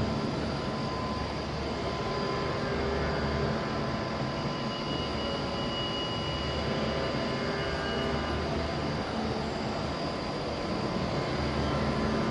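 Steady background hum and hiss of a large hall, with a low rumble that swells and fades every second or two and a faint steady high tone; no sharp sounds stand out.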